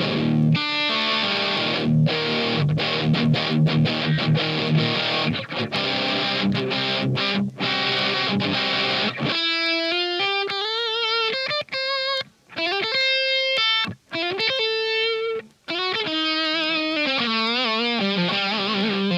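Overdriven electric guitar through an amp: dense distorted chord riffing, then about halfway through, single-note lead lines with wide vibrato, broken by a few short pauses.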